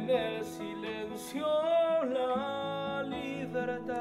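A man singing an Argentine folk song to his own classical guitar accompaniment, with a long held note with vibrato in the middle.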